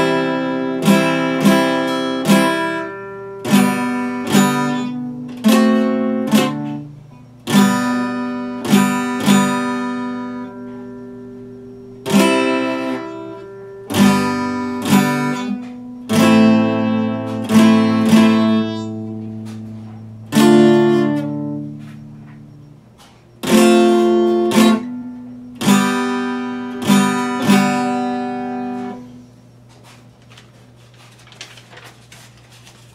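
Acoustic guitar played solo without singing: chords plucked one after another at an unhurried pace, each ringing out and fading before the next. The last chord dies away near the end.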